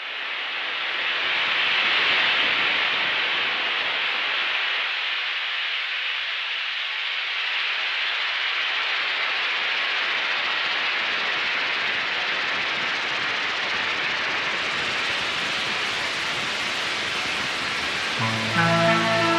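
Steady rushing hiss of noise opening the recording, fading in quickly and then holding level. Its top end grows a little brighter a few seconds before the end.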